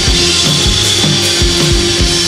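Live psychedelic rock band playing an instrumental passage: fuzzed electric guitars and keyboard over bass and a steady driving kick-drum beat, about three beats a second.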